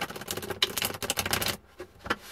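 A Wizards Tarot deck being riffle-shuffled: a rapid flutter of cards snapping off the thumbs that stops suddenly after about a second and a half.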